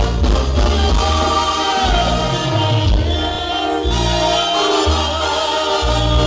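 Live banda (Mexican brass band) music: the horns hold long chords over a loud, sustained low bass line that moves to a new note about every second.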